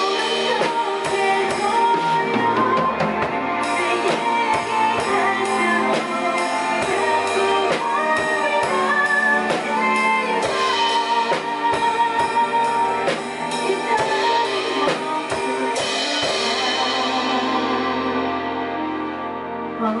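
Acoustic drum kit played with sticks along to a pop ballad backing track with guitar, keeping a steady beat with cymbals. Near the end the drumming stops and a cymbal wash rings and fades while the backing music carries on.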